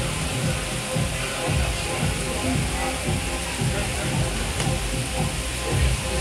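Background music and indistinct voices under a steady hiss and an uneven low rumble.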